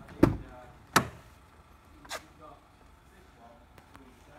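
Car front door being opened: a heavy, low thump, then a sharp click about a second later and a softer click just after two seconds.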